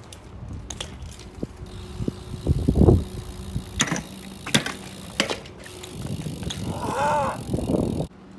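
BMX bike on concrete: tyres rolling, then a grind along a waxed concrete ledge, loudest near three seconds in, with sharp clacks as the bike hops and lands.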